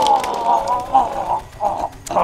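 Men laughing hard in loud, broken bursts of pitched voice, dying down toward the end.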